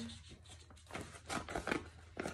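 Paper envelope rustling as it is handled and turned over, a string of short crinkles and taps from about a second in.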